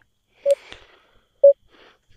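Countdown timer beeping once a second: two short, loud beeps at the same pitch, a second apart.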